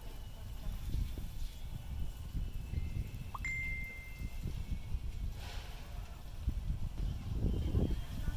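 Wind rumbling and buffeting on the microphone outdoors. A little over three seconds in, a single short high tone rises and then holds steady for about a second.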